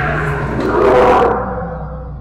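A loud growl echoing through a sewer tunnel, swelling to its loudest about a second in and then dying away.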